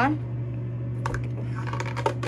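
A few light clicks and taps from about a second in as a plastic dish-soap bottle and small pieces are handled, over a steady low hum.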